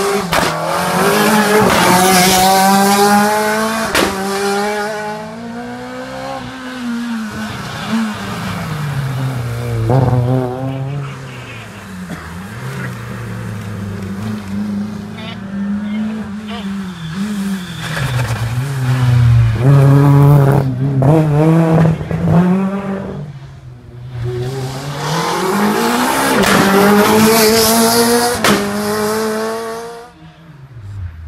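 Rally car engines revving hard and changing up through the gears as the cars pass, with quick rises and falls in revs between the runs. A car comes through at the start and another near the end, each accelerating in steps.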